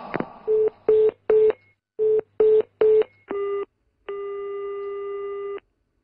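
Telephone line sounds as a new call is placed. Six short beeps are followed by a slightly longer one, then a single steady ringback tone of about a second and a half as the call rings through.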